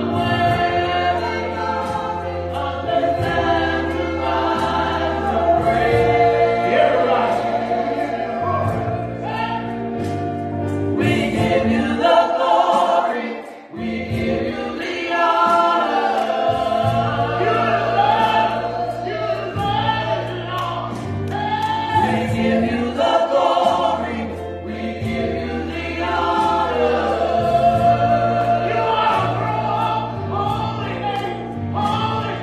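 Gospel choir singing through microphones with keyboard accompaniment carrying sustained bass notes. About halfway through, the bass drops out and the sound dips briefly before the full choir comes back in.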